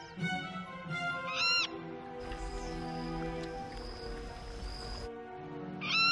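Snowy egret chicks squawking, one short rising-and-falling screech about a second and a half in and another at the very end, over background music with long sustained notes.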